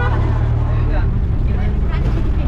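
Steady low engine and road rumble of a moving jeepney, heard from inside its open passenger cabin.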